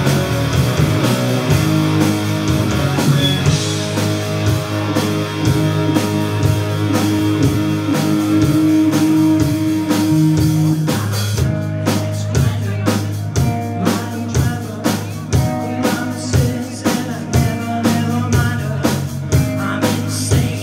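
Live rock band playing electric guitars, bass and drums. It holds long sustained chords, then about eleven seconds in it breaks into a choppier riff over a steady drum beat.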